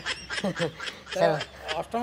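A man's voice in short, broken bursts, part chuckle and part repeated syllables.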